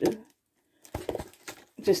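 A woman's speech, broken by a short pause holding a few light clicks and taps.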